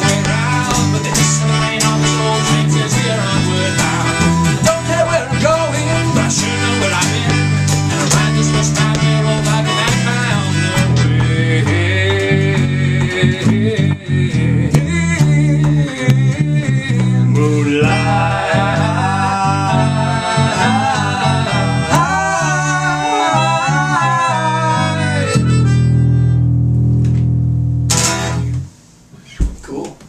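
Folk trio playing an instrumental passage on acoustic guitar, electric bass and a melodica, the melodica carrying a wavering melody in the second half. The song ends on a long held chord that cuts off a little before the end.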